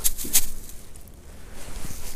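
Dry grass rustling as pieces of bark are moved and set on it by hand, with two sharp scrapes in the first half second, then quieter.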